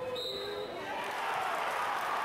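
Basketball game sound in a gym: the ball bouncing on the hardwood court under a steady hum of crowd voices, with a short high steady tone near the start.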